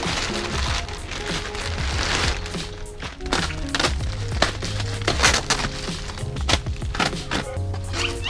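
Large clear plastic bags crinkling and rustling as fender flares are unwrapped and pulled out, in irregular crackly bursts, over background music with a steady bass line.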